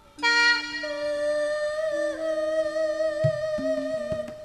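Instrumental passage of Javanese song accompaniment between sung lines: long steady held notes, joined by short low hand-drum strokes near the end.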